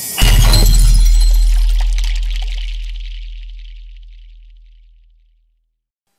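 Intro sound effect: a rising whoosh that breaks into a heavy cinematic impact just after the start, a deep boom under a noisy crash, both fading away over about five seconds.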